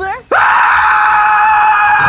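A person screaming: one long, loud scream that starts suddenly about a third of a second in and holds a steady high pitch.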